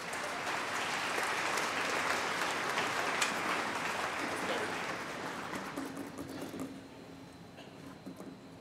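Audience applauding: the clapping builds over the first couple of seconds, then thins out and dies away about seven seconds in.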